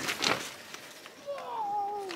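Faint rustle of tent fabric, then, from a little past halfway, a woman's voice drawing out a falling tone that leads into speech.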